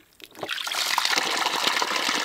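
Wash water gushing out of the opened drain valve at the base of a Lavario portable clothes washer bucket and splashing onto gravel. The flow starts about half a second in and then runs steadily.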